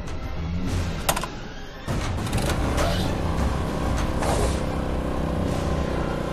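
Motor scooter engine starting after a click about a second in, then running steadily, under background music.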